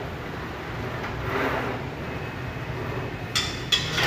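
Two sharp metallic clanks with a short ring, about half a second apart near the end: the Smith machine's barbell being racked onto its hooks after a set of chest presses.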